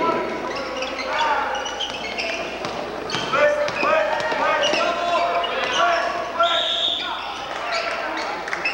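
A basketball bouncing on a gym's hardwood floor during play, with sneakers squeaking on the floor and the crowd's voices in the background.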